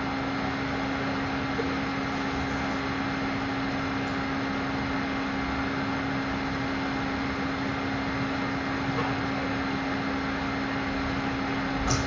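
Steady room noise: an even hiss with a constant low hum, and no distinct events.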